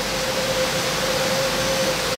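Steady rushing noise from the koi tanks' water circulation and aeration, with a constant mid-pitched hum running underneath.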